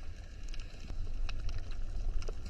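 Underwater ambience picked up by a camera in a waterproof housing: a steady low rumble of water with a few faint scattered clicks.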